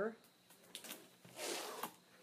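Sheets of paper rustling as they are handled: a short rustle, then a longer one lasting about half a second.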